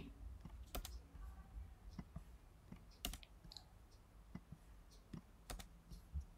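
Faint, irregular clicks of a computer keyboard, single key presses spaced unevenly about every half second to second, as code is selected and deleted.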